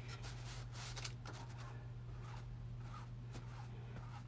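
Faint soft scratching and dabbing of a foam brush spreading Mod Podge over paper on a canvas, with a steady low hum underneath.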